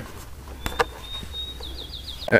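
A bird whistling: one thin, high note held for about a second, breaking into a quick warble near the end. Two short, soft clicks come just before the note.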